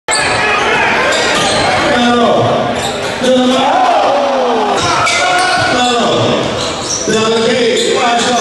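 Live basketball game audio in a gym: a ball bouncing on the hardwood court among spectators' voices and shouts echoing in the hall.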